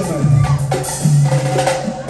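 Live dance band playing: a steady bass line under regular drum strikes, with a held melody note that stops about half a second in.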